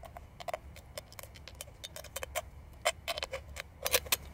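Thin aluminium walls of two cut-down beer can bottoms clicking and crinkling irregularly, a few light clicks a second, as one is pressed and worked down inside the other to form a homemade alcohol stove.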